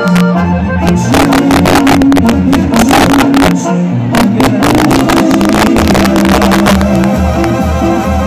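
Live banda sinaloense music played loudly: a brass band with a tuba bass line, trombones and drums keeping a steady beat, heard from the crowd.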